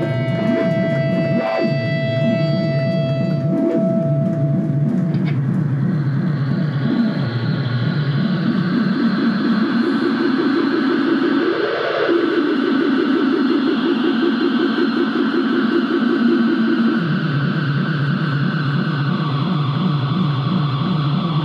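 Black/death metal band playing live: heavily distorted guitars and bass over drums in a dense, rhythmic riff. A steady high tone rings over the first few seconds before the riff fills out.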